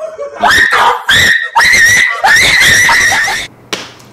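High-pitched screaming: four shrill shrieks that each slide up at the start, the last one held longest, then a short sharp click near the end.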